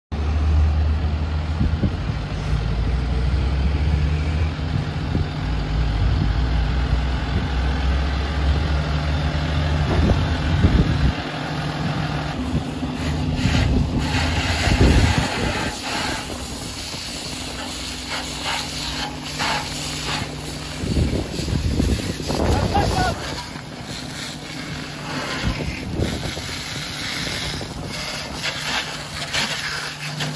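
A large vehicle engine running steadily with a low hum. Bursts of hissing come in around the middle of the stretch and again later on.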